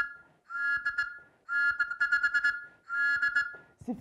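A small hand-held whistle blown in short, high, fluttering blasts, each about a second long with brief gaps between: the tail of one blast, then three more.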